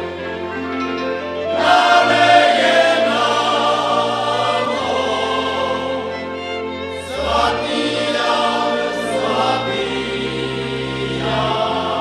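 A Moravian folk song sung in long held notes by several voices over a cimbalom band accompaniment with a steady bass line. A louder sung phrase enters about two seconds in and another about seven seconds in.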